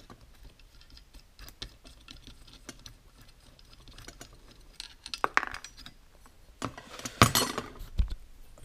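Small metal clicks and clinks of a thin steel pick and motorcycle clutch parts being handled on a workbench, with one short ringing clink a little after five seconds and a cluster of louder knocks near the end.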